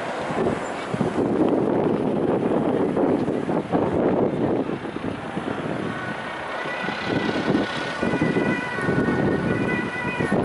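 Rough, steady noise of engines and traffic. From about six seconds in, an emergency vehicle's siren joins faintly, its tones held steady.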